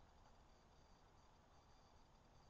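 Near silence: a faint, steady hiss with nothing standing out.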